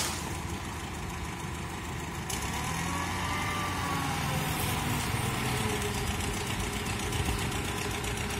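Truck engine idling steadily, with a sharp knock right at the start.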